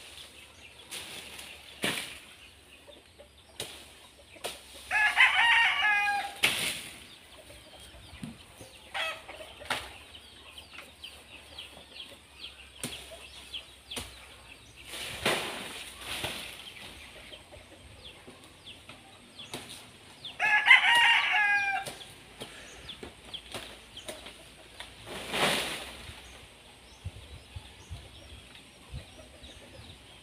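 A rooster crowing twice, about five seconds in and again about twenty seconds in, each crow lasting over a second. A few short rustling bursts come in between.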